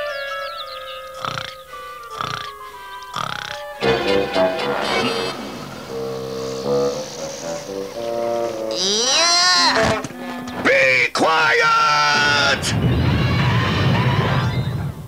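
Cartoon soundtrack: a falling run of musical notes with three sharp knocks about a second apart, then bouncy rhythmic music. From about nine seconds in, cartoon animal cries with rising and falling pitch come in over the music, and a low rumble builds near the end as a crowd of jungle animals bursts out.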